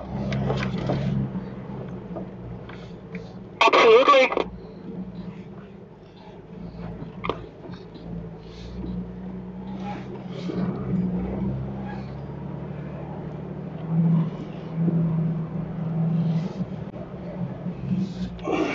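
Jeep engine running at low speed on a dirt track, a steady low hum with scattered knocks and rattles from the rough ground, growing a little louder about fourteen seconds in.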